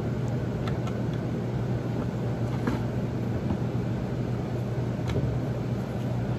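Steady low mechanical hum, with a few faint light clicks about one, three and five seconds in.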